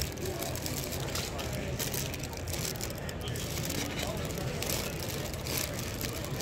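Clear plastic bags around vintage Christmas ornaments crinkling in irregular bursts as a hand sorts through them. Under it runs a steady low rumble with faint background voices.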